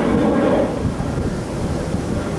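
Wind buffeting the camera's microphone: a loud, steady low rumble with no distinct events.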